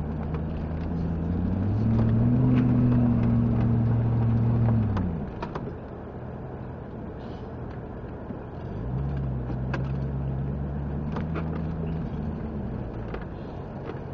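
Off-road 4x4's engine, heard from the roof, rising in pitch about two seconds in and holding under load, dropping off sharply about five seconds in, then pulling again about nine seconds in before easing. Frequent sharp knocks and rattles run through it.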